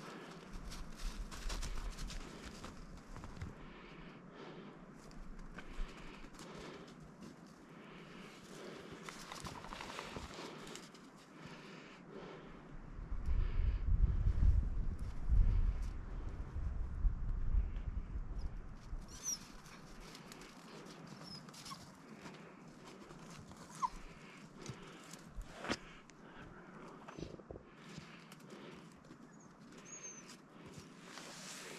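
A hunting dog sniffing and pawing about in snow and heather at a marten den: scattered soft rustles, scrapes and small clicks. A louder low rumble runs for about five seconds in the middle.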